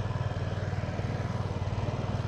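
Outboard boat motor idling steadily: a low, even hum with a fast regular pulse.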